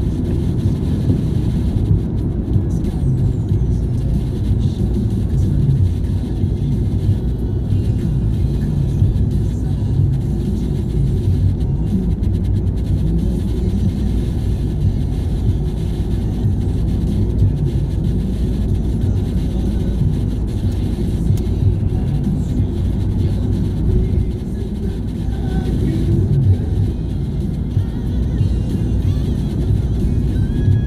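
Steady low road and engine rumble heard from inside a car cabin while driving at speed, with music playing underneath.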